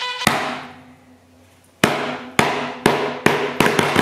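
Hand slaps on a desk: one hard slap right at the start that fades away, then a run of about six sharp knocks, roughly two a second, from about halfway through.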